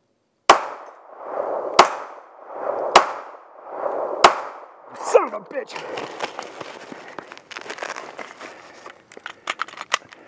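Four shots from a 9 mm Smith & Wesson M&P9 pistol, a little over a second apart, followed by a reload: several seconds of clicking and rattling as the magazine is changed, with sharper metallic clicks near the end.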